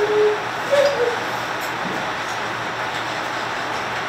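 Steady hiss of background noise with no clear source, with a brief faint voice trace about a second in.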